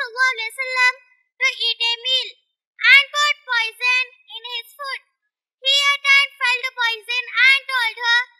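A young girl's high-pitched voice speaking emphatically into a microphone, in short phrases broken by brief pauses.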